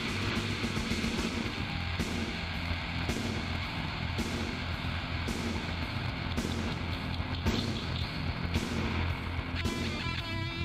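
Heavy metal instrumental break with no vocals: a dense, loud wall of distorted electric guitar over bass and drums, the chords changing about once a second.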